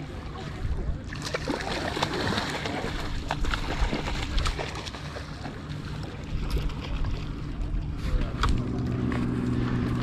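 Shallow seawater sloshing and splashing around anglers wading in waders, with scattered small splashes and clicks.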